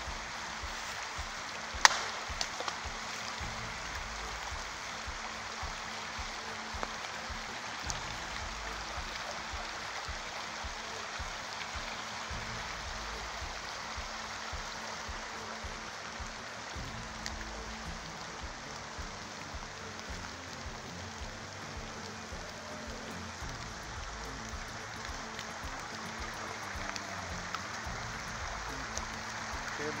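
A single wood knock, a stick struck once against a tree trunk about two seconds in, followed by a couple of faint ticks. A brook runs steadily underneath throughout.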